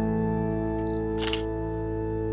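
Background music of held keyboard chords, with a single brief camera shutter click about a second and a quarter in.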